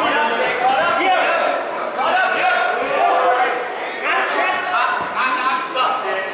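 Ringside crowd shouting and calling out, several voices overlapping so that no words stand out.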